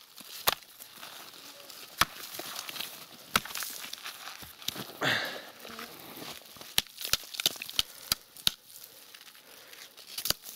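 Rustling and crackling as hands move among dry leaves, twigs and salt crumbs at the foot of a tree, with several sharp clicks spread through it and a louder scraping rustle about halfway.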